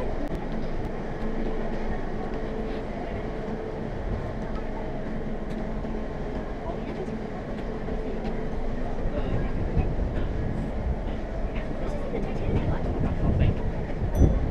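Steady low rumble of the passing Great Lakes freighter Paul R. Tregurtha, with a faint hum that fades out about six seconds in. Wind buffets the microphone in stronger gusts near the end, over crowd chatter.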